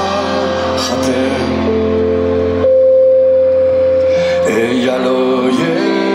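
Live rock band playing through the stage PA: sustained keyboard-led chords, with one long held note through the middle before the chords change again.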